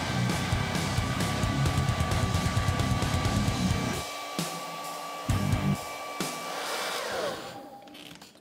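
Hair dryer running with a steady whine over rushing air, then switched off about seven seconds in, its pitch falling as the motor spins down.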